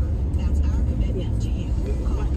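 Steady low rumble inside a car's cabin, with faint voices in the background.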